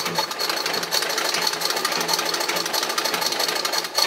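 Antique Singer 27 vibrating-shuttle sewing machine, driven by its treadle, sewing a test seam through fabric: a steady, rapid, even mechanical clatter of needle and shuttle strokes with a thin high tone running through it. The machine is freshly reassembled and making a balanced stitch.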